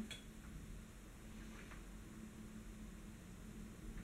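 Near silence: quiet room tone with a faint steady hum and one or two very faint small clicks.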